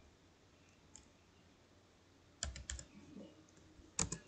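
Computer keyboard keys being typed: after a quiet stretch with a single faint click, a quick run of three or four sharp keystrokes comes about two and a half seconds in, with a few softer clicks after.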